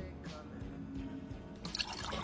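Quiet background music with a faint steady tone, and near the end a brief splash of water poured from a mug over a face.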